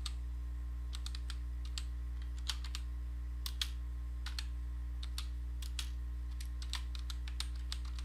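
Computer keyboard typing: irregular runs of key clicks as a short line of text is entered, over a steady low electrical hum.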